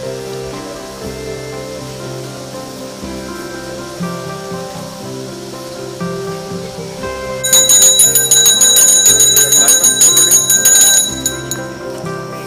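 A hand bell rung rapidly for about three and a half seconds, starting a little past halfway, its bright ringing loudest over steady music. It is the kind of brass bell rung during a Hindu puja offering.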